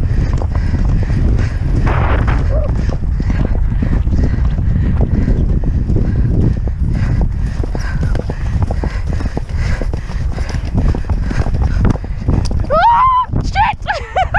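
A pony galloping over turf, its hoofbeats under heavy wind rumble on a helmet-mounted microphone. Near the end a brief voice call cuts through.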